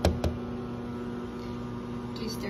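Microwave oven running with a steady low hum while heating an egg mixture. Two quick knocks sound right at the start, the second about a quarter second after the first.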